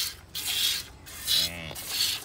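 Milk squirting by hand from a water buffalo's teat into a steel bucket: short hissing spurts, about two a second, one for each pull on the teat.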